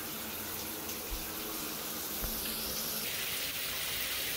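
Shower running into a bathtub: a steady hiss of spraying water. Its tone shifts slightly about three seconds in.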